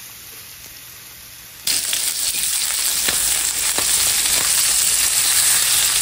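Steak and onions frying in a cast iron skillet: a quiet sizzle that jumps suddenly, just under two seconds in, to a much louder, steady sizzle, with a few sharp clicks in the middle.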